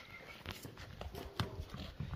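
A few faint knocks and scuffs of a calf's hooves stepping on a concrete yard.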